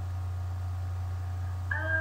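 Steady low electrical hum with a faint steady whine on a webcam stream's audio, and a woman's voice starting up near the end.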